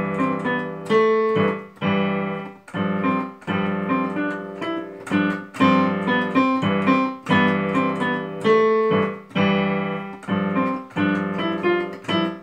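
Yamaha digital piano played slowly: repeated chords struck roughly once a second, each ringing and fading before the next.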